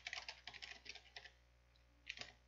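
Faint computer keyboard typing: a quick run of key clicks that stops a little over a second in.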